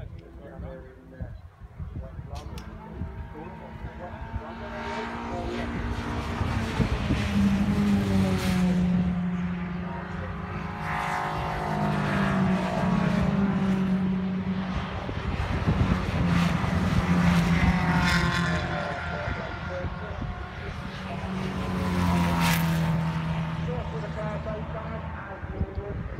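MG club race cars passing one after another on the circuit, the engine sound swelling and falling in pitch with each car going by, about four passes in all.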